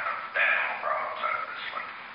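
Speech only: Richard Nixon's voice on a White House tape recording, thin and tinny, with the lows and highs cut away.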